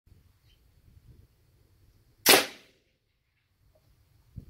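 A single shot from a custom .45-calibre big-bore PCP air rifle with a dump valve, which releases the whole air chamber at once. It is one sharp, loud crack a little over two seconds in that dies away within half a second.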